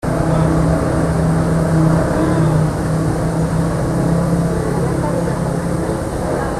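A steady mechanical hum, like a motor running at a constant speed, under a dense bed of background voices.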